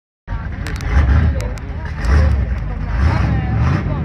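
Engines of a Pontiac Trans Am and an Audi S2 Coupe running at the drag-race start line, low-pitched and swelling in revs a few times while the cars wait to launch.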